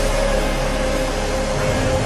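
A large congregation praying aloud all at once, a dense blur of many voices, over sustained keyboard chords.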